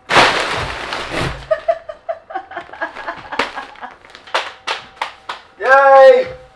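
A loud crinkling rustle of stuffed woven plastic laundry bags as a person throws herself onto the pile, fading over about a second and a half. Short voice sounds and several sharp taps follow, and a loud high cry that rises and falls comes near the end.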